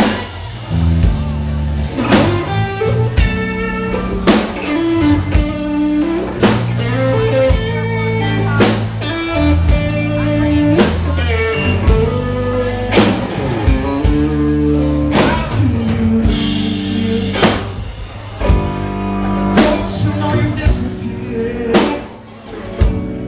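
Live blues band playing: electric bass, acoustic-electric guitar and a second electric guitar over a drum kit, with regular drum accents.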